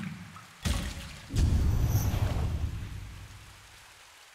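Edited transition sound effect: a sudden splash-like burst, then a louder deep rumbling boom that slowly dies away.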